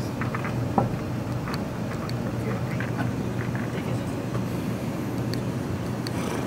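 Steady low room hum with a few faint, light clicks scattered through it.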